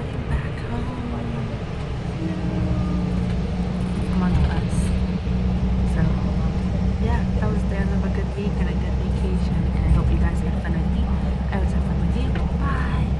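Steady low drone of a bus's engine and tyres at highway speed, heard from inside the passenger cabin.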